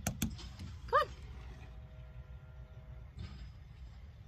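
Outdoor background with a steady low rumble of wind on the microphone, and a faint steady multi-tone hum through the middle; a woman says "come on" about a second in.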